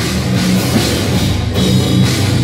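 Hardcore band playing live and loud: distorted electric guitars, bass and a drum kit.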